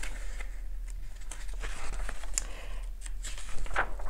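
Paper pages of a printed booklet being turned and handled: a run of rustles and crinkles with a few sharper flicks of the sheets.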